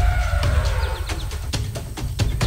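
Background music: a deep bass with a falling tone in the first second, then a quick run of sharp percussion hits.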